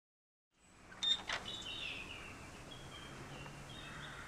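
Quiet outdoor ambience fading in, with a couple of sharp clicks about a second in, then high chirps that fall in pitch, like birds, over a low steady hum.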